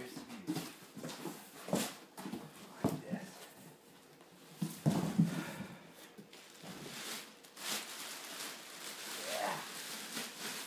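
Cardboard box and plastic bag rustling and knocking as an amplifier head is pulled out of its shipping box, with the loudest knocks about two, three and five seconds in. A few short voice-like sounds come between, one rising in pitch near the end.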